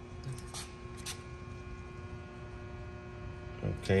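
Steady electrical hum from the energized PDI WaveStar power distribution unit's transformer, running on 460-volt three-phase power. Two faint clicks come about half a second and a second in.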